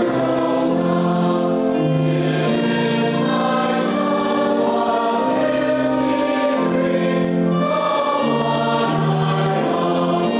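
Congregation singing a hymn together in slow, long held notes.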